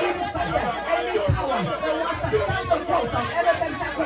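Only speech: a man talking animatedly into a microphone.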